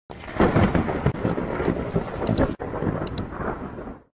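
A loud, thunder-like rumble with irregular sharp cracks. It breaks off for an instant about two and a half seconds in and fades out near the end.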